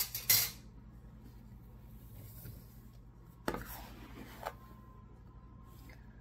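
Kitchen utensils handled while measuring sugar: a measuring cup knocking and scraping against a plastic container as sugar is scooped. Sharp knocks come right at the start and again about three and a half seconds in, with a smaller one a second later and faint rustling between.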